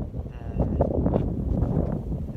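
Wind buffeting the microphone: a rough, low rumble that grows louder about half a second in.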